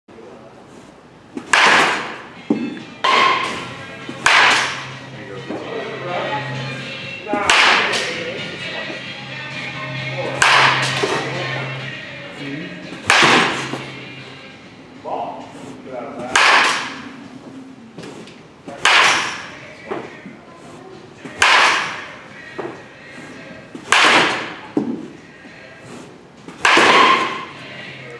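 Baseball bat hitting pitched balls in an indoor batting cage: a sharp crack about every two and a half to three seconds, about eleven in all, each ringing briefly in the large room.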